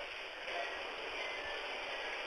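Steady low hiss of a recorded telephone line, with no voice on it.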